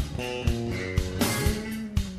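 Live funk electric bass feature: sustained low bass notes over a steady drum beat of about two hits a second.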